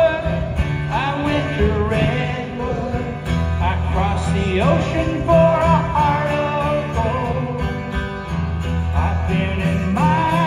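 Live solo acoustic music: strummed acoustic guitar with a held, wavering melody line above it, sung at the microphone, the line gliding upward about halfway through.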